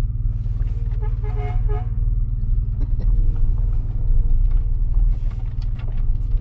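DeLorean DMC-12's rear-mounted V6 running as the car drives off, a steady low drone heard from inside the cabin that grows a little louder about halfway through.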